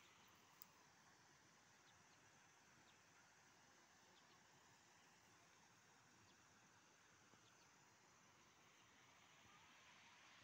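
Near silence: faint steady background hiss, with one small click about half a second in.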